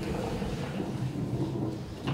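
A steady low rumble, about as loud as the speech around it, with no clear voice in it.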